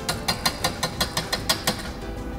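Metal wire whisk clicking against the side of a metal pan as a sauce is whisked, about ten quick strikes at roughly five a second, stopping near the end.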